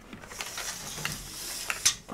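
Steel tape measure blade being drawn out along a cable, a rattling slide broken by several clicks, the sharpest near the end.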